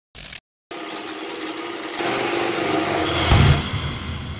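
A short snip of tailor's shears, then a sewing machine stitching steadily and getting louder. Near the end comes a low thud and the machine's high rattle stops.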